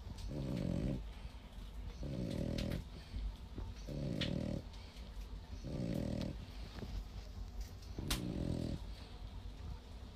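French bulldog snoring in its sleep: a short, low snore about every two seconds, five in all, typical of the breed's short, flat muzzle.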